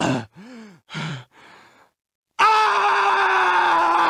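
Cartoon dog's voice gasping and heaving in a few short breaths just after vomiting, then, after a brief silence, letting out one long anguished groan that slides slowly down in pitch.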